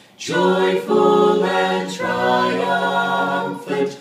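A cappella vocal quartet of two men and two women singing a Christmas carol in close harmony, holding sustained chords, with a short breath just after the start and another near the end.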